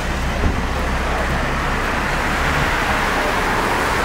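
Steady road traffic noise: a continuous rumble and hiss of vehicles on the street.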